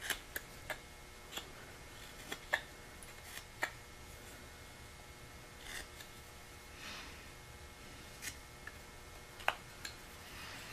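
A carving knife made from a modified Mora blade slicing basswood in short paring cuts. About a dozen brief cuts come at irregular intervals, with a couple of longer drawn slices around the middle.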